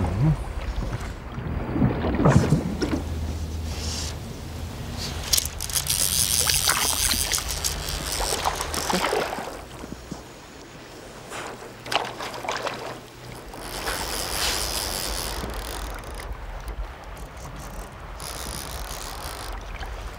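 A hooked trout thrashing and splashing at the surface as it fights the fly line, in several irregular bursts of splashing over the steady rush of the stream.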